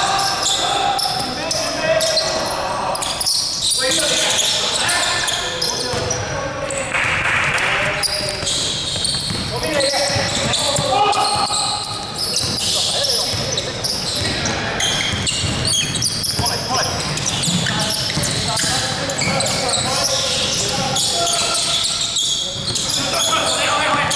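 A basketball bouncing on the wooden court of a large gym, mixed with players' shouted calls that echo in the hall.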